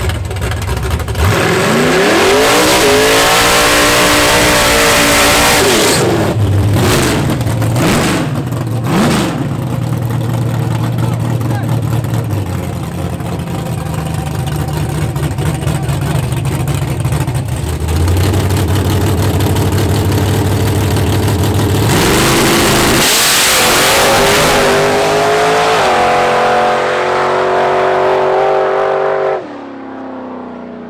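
Fox-body Ford Mustang drag car's engine revving: a long rise in pitch, several quick throttle blips, stretches held at steady high revs, then a run at high rpm as it goes down the strip. The sound drops off suddenly near the end.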